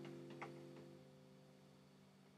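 A nylon-string classical guitar's chord fading out to near silence, with one faint click of a finger on the strings about half a second in.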